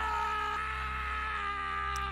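Background music under a narration pause: a sustained drone of several held tones, sinking slightly in pitch.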